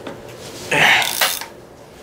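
A short, forceful grunt or exhale of effort, about two-thirds of a second in and lasting about half a second. It comes as a Loctited front brake caliper bolt is forced loose with a ratchet.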